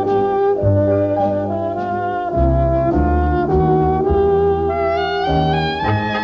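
Instrumental music played back from a vintage Decca music cassette on a tape deck, fed by cable through a headphone volume control box straight into a camcorder's microphone input rather than picked up through the air. Held melody notes change about every half second over a bass line.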